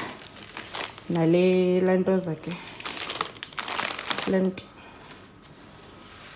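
Plastic packaging crinkling as grocery and cleaning products are picked up and handled: a crackly burst lasting about a second and a half in the middle, between short bits of voice.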